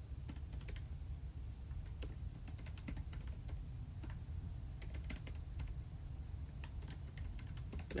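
Light, irregular clicks and taps, some coming in quick little clusters, over a steady low background rumble.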